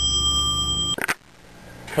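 A small bell ringing out after being struck, a clear steady tone that cuts off abruptly about halfway through, followed by a brief click and quiet room sound.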